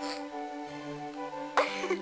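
Background music with steady held notes, and a person's cough about one and a half seconds in.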